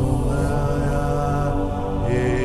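Slow live worship music: sustained keyboard chords ringing with no beat, with one long held high note from about a third of a second in that ends about a second and a half in.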